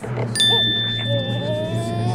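A bright, bell-like chime sound effect strikes once about a third of a second in and rings on steadily, while background music with a rising melody comes in.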